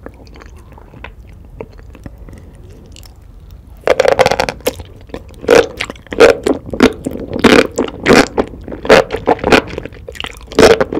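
Close-miked chewing of a big mouthful of sauce-coated enoki mushrooms. After a few quiet seconds of faint clicks, loud wet bites and chews start about four seconds in and come about twice a second.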